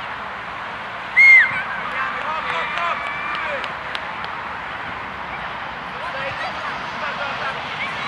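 Children's voices shouting and calling across a youth football pitch during play, with one loud, high-pitched shout about a second in.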